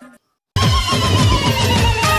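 Loud background music with a heavy bass beat starts abruptly about half a second in, after a brief moment of silence.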